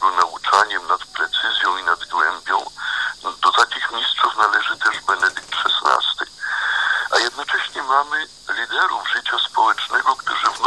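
Continuous speech with a thin, band-limited sound like a radio broadcast.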